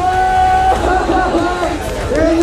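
An announcer's voice over the public-address system, calling out in long drawn-out tones, with crowd noise underneath.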